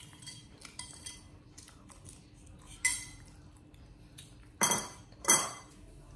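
A metal spoon clinking and scraping in a ceramic bowl, light clicks with a brief ring. Near the end come two much louder sharp knocks in quick succession.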